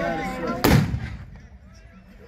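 Volley of black-powder muskets fired together by a line of tbourida riders, heard as one loud blast about half a second in with a short echoing tail. Shouting voices come just before it.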